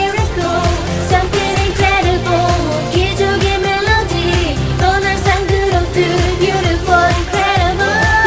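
Dance-pop song with a steady beat and a sung vocal line over the backing track.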